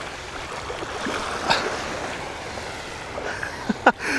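Small surf waves washing onto a sandy beach at the water's edge, a steady rush of water, with a short voice sound just before the end.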